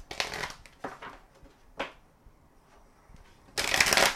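Crystal Mandala oracle deck being shuffled by hand: a few brief card sounds in the first two seconds, then a louder run of shuffling near the end.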